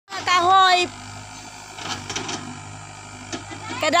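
A person's voice briefly at the start, then a Sumitomo mini excavator's diesel engine running steadily as a low, even hum, until speech comes in near the end.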